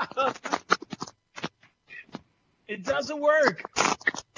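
Men's voices and laughter over a video-call connection. The sound comes in choppy snatches with short dropouts and a gap of near silence about two seconds in.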